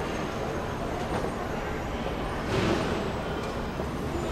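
Steady low rumble and hiss of busy airport-terminal background noise, with a short louder hissing swell about two and a half seconds in.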